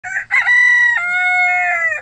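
Rooster crowing once: two short opening notes, then a long held call that drops in pitch about halfway through and falls away at the end.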